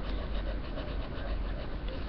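Colored pencil scratching on drawing paper in a steady run of short shading strokes.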